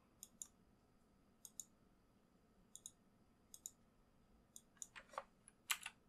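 Faint computer mouse clicks, each a quick pair of button press and release, coming about once a second at first, then a closer, louder run of clicks near the end.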